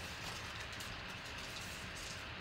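Faint steady background noise with no distinct events: room tone.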